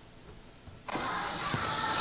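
About a second of near silence, then a steady rushing background noise cuts in abruptly, with one short low thud about halfway through.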